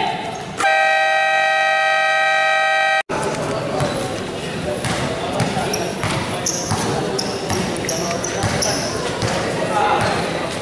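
Basketball game buzzer sounding once for about two and a half seconds and cutting off sharply. After it, a basketball bouncing on the court and sneakers squeaking over the noise of the gym.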